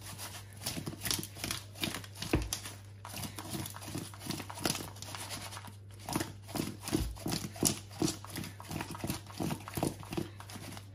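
Raw potatoes, corn pieces, sausage and shrimp tumbling and knocking against a wooden bowl as they are tossed and mixed by hand: an irregular clatter of soft knocks, with a low steady hum underneath.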